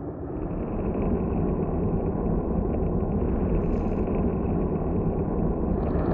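Deep rumbling sound effect for an animated logo intro, growing louder over the first second and then holding steady, with a faint brief hiss about halfway through.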